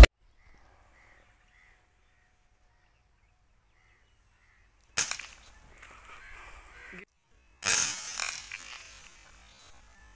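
Cometa Fusion .22 air rifle shot: a sharp crack about five seconds in, followed by a short noisy tail. A second sharp report comes about two and a half seconds later and fades over a second.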